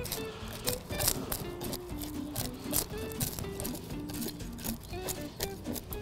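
Butter knife scraping the scales off a whole scup from tail to head, a quick run of scratchy strokes, over background music with a melody of short notes.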